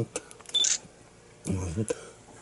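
Handling noise of a camera pressed against a fleece hoodie: a few sharp clicks and a short hissy rustle about half a second in, between brief bits of a person's voice.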